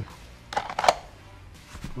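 Pistol being pushed into a Black Arch holster: a short rasp as it slides in, then a sharp click about a second in as it seats.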